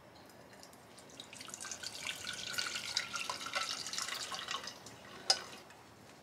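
Dashi stock pouring from a pot through a small mesh strainer into a saucepan, splashing for about four seconds, then a single sharp clink near the end.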